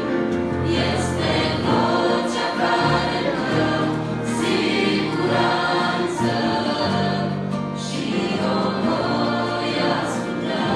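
A women's choir singing a Christian hymn with instrumental accompaniment. Long held bass notes move under the voices.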